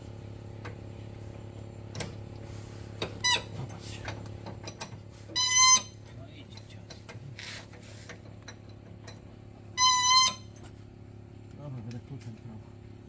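A seized suspension bolt on a Toyota Hilux being turned with a long breaker bar, squealing high and loud as it gives: two half-second squeals about five and a half and ten seconds in, a shorter one before them, and a few light metallic knocks, over a steady low hum.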